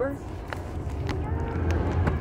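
Low, steady rumble of a car heard from inside the cabin, growing louder near the end, with a few light clicks and faint voices.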